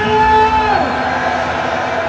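A man's voice through a microphone and loudspeaker holding one long, drawn-out shouted note that falls away a little under a second in, with a crowd's noise underneath.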